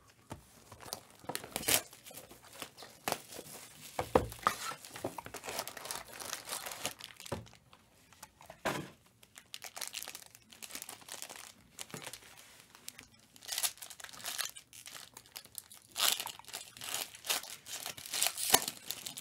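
A Panini Prizm World Cup trading-card box being torn open and its foil-wrapped card packs crinkling as they are pulled out and stacked, an irregular run of crackles with several sharper, louder ones.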